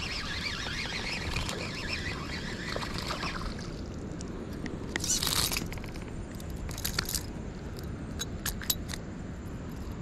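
Fishing reel being cranked as a small bass is reeled in, then a short burst of splashing about five seconds in as the fish is lifted out of the water on the line. Scattered light clicks follow as the line and fish are handled, over steady river noise.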